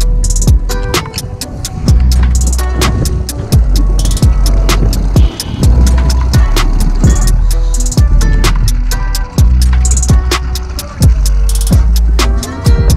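Background music with a steady drum beat and deep bass.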